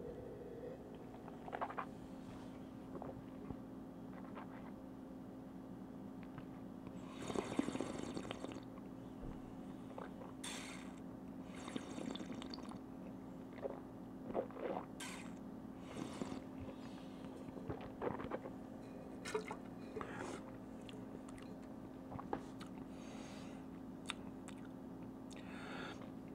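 A person tasting red wine in the mouth: a slurp of air drawn through the wine about seven seconds in, then scattered quieter swishes, lip smacks and breaths. A steady hum runs underneath.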